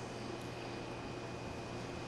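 Low, steady hum and hiss of a restaurant kitchen's ventilation and machinery, with no distinct knife strokes standing out.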